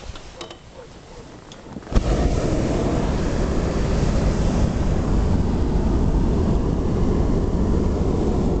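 Hot air balloon's propane burner firing: a loud, steady blast that starts suddenly about two seconds in, after a few faint clicks.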